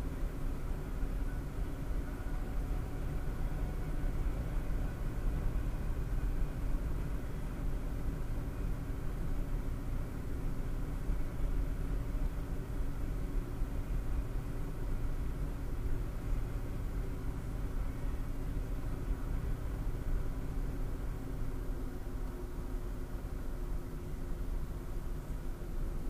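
Steady road and tyre noise with a low engine hum inside a car cabin cruising at about 100 km/h, picked up by a dashcam microphone. The drone holds even throughout, with no sudden sounds.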